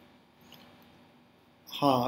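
Near silence with a faint steady hum, then a man starts speaking in Hindi near the end.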